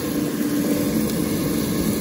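Air fryer fan running with a steady hum, its basket drawer pulled open.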